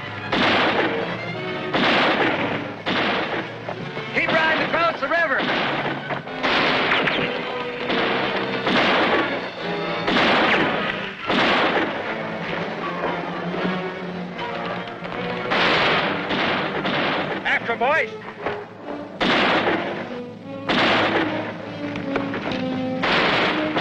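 A string of gunshots, one every second or so, each with a short echo, over orchestral film score.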